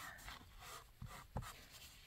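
A paper towel rubbing over a canvas, wiping wet oil paint off it: a faint, scratchy rustle in short strokes, with a light click about a second and a half in.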